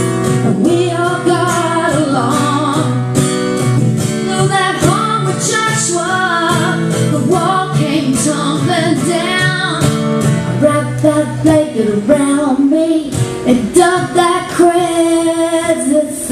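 A woman singing live to her own strummed acoustic guitar, the guitar keeping a steady strumming rhythm under the melody.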